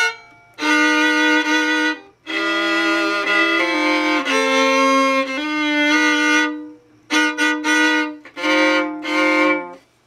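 Antique Jacobus Stainer-copy violin, freshly strung, bowed in a string of long sustained notes and double stops with short breaks between strokes. The notes shift pitch from stroke to stroke, and there are a couple of quicker strokes about seven seconds in.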